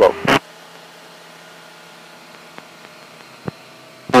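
Steady faint hiss of the aircraft's radio and intercom audio between transmissions, after a last spoken word right at the start. A faint click comes about three and a half seconds in.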